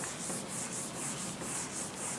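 A whiteboard eraser wiping across a whiteboard in quick back-and-forth strokes, about three swishes a second, clearing the board.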